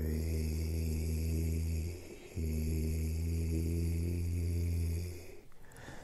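A man's voice droning two long, low, steady held notes, the first about two seconds and the second about three, with a short break between: an over-stretched, chant-like count that sounds a bit mantric.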